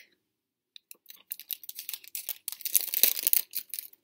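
Clear plastic packet crinkling and crackling as it is handled and opened. The crackles begin about a second in and grow louder near the end.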